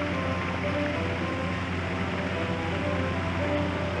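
Small fountain jets splashing into a pond, a steady rush of water, with soft background music of held notes over it.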